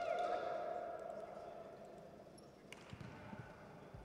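Indoor volleyball hall ambience: a held, pitched call right at the start that fades over about two seconds, then a few soft thumps about three seconds in.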